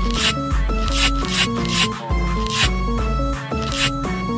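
Background music with a steady beat: a bass line under held synth notes and regular hi-hat-like hits.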